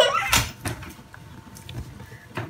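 Handling noise of a Nokia E71 phone held in the hands: one sharp plastic knock about a third of a second in, then a few faint ticks as it is turned over.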